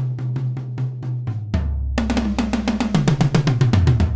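Sampled acoustic drum-kit toms from Steinberg Groove Agent's 'The Kit' library, triggered from a keyboard and played in rapid fills of about eight strokes a second. The pitch steps down across the toms, and a deeper floor-tom note joins about a second and a half in.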